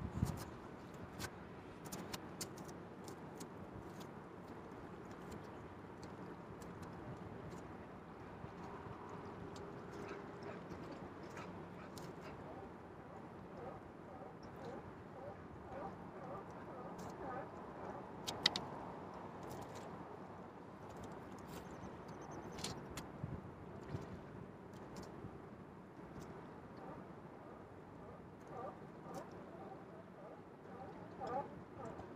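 Faint outdoor waterside ambience: a low steady wash with scattered light clicks and taps, the sharpest about eighteen seconds in, and faint voices now and then.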